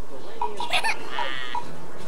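Voices, with a short, high-pitched squeal about a second in, likely from the young girl.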